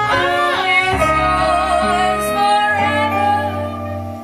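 Live jazz band: saxophones play a melody with vibrato and slides over upright double bass notes.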